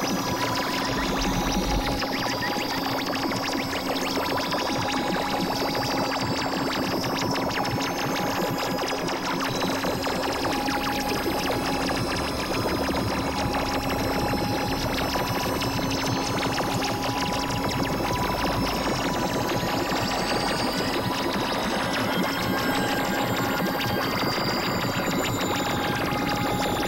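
Experimental electronic synthesizer music: a dense, noisy drone over a steady low tone, with shorter higher tones coming and going. Rising high-pitched sweeps join in about three-quarters of the way through.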